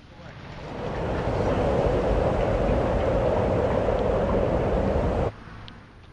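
A steady, loud rushing noise fades in over the first second, holds, and cuts off abruptly a little after five seconds in. A much quieter background with one faint click follows.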